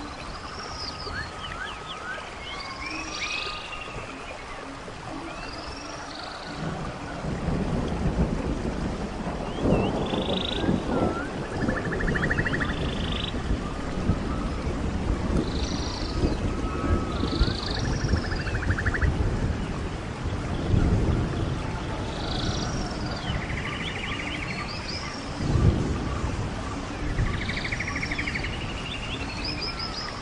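Rainforest ambience: birds calling and chirping again and again over a steady hiss of rain. Low rolls of thunder rumble in from about seven seconds in and swell several times.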